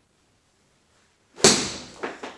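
A golf iron striking a ball off a hitting mat: a single sharp, loud crack about one and a half seconds in, dying away quickly.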